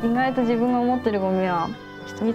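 A woman speaking in Japanese, in drawn-out phrases, over soft background music.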